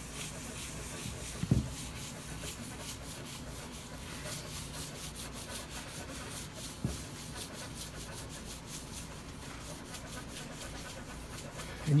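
A paper towel loaded with polishing compound is rubbed rapidly back and forth over a granite slab, polishing and blending a cured UV adhesive chip repair. It makes a steady, quick scrubbing of cloth on stone, with two soft knocks along the way.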